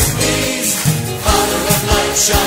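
Praise-and-worship song: a choir singing over a band with drums.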